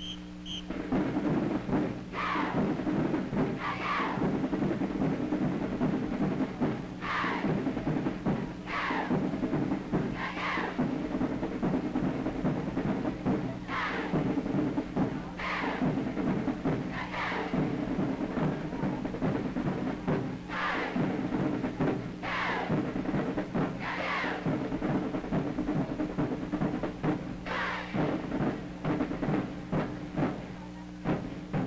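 High school marching band starting to play about a second in, drum-heavy, with a bright accent about every second and a half in groups of three, over a steady low hum from the old recording.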